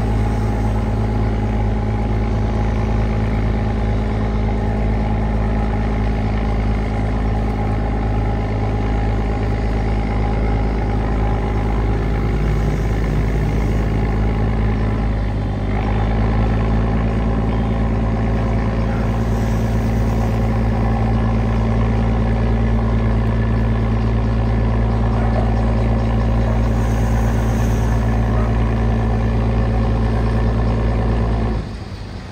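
A tugboat's diesel engine running steadily under heavy throttle while working to free a grounded barge, a deep, even engine note. About halfway through, the sound dips briefly, then settles slightly higher and louder.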